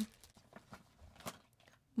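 Makeup packaging being handled: faint crinkling of clear plastic and a few light clicks and taps as items are moved about in a drawer.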